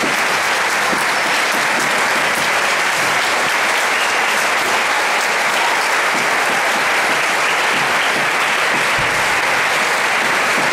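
Audience applauding steadily, a dense, unbroken clapping.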